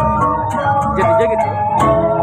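Balinese gamelan playing dance accompaniment: a melody of ringing metallophone notes over low drum strokes, with a bright metallic strike near the end.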